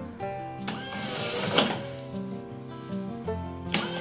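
Sesame 3 smart lock's motor whirring briefly as it turns the door's thumbturn, about a second in and again starting right at the end, over background music.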